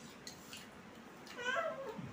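Faint clicks of eating, then near the end a short, high, meow-like cry that falls in pitch.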